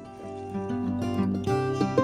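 Background music on plucked strings, with a bright melody of short notes that gets fuller and louder about three-quarters of the way through.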